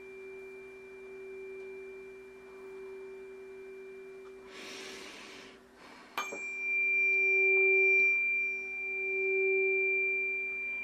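Tuning forks ringing in pure sustained tones, with a high overtone above the main note. The tones fade over the first half. A breath comes about five seconds in. About six seconds in a fork is struck with a sharp tap and rings loud again, its tone swelling and fading in slow pulses.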